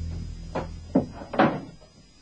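A few short knocks and bumps of office folders and files being handled, three in all, the loudest about one and a half seconds in. Music fades out at the start.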